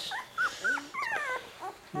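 Portuguese water dog puppy whimpering: a few short, high whines, then a longer wavering whine about a second in.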